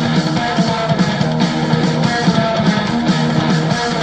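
Hard rock band music led by electric guitar, with bass underneath and no singing: the instrumental stretch that follows the chorus.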